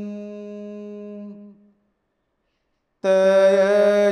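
A Buddhist monk's chant, one long held tone that fades away about one and a half seconds in. After a second or so of silence, the chanting starts again loudly about three seconds in.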